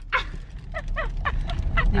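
A young woman laughing in a run of short bursts, heard inside a car over the low rumble of the car's interior.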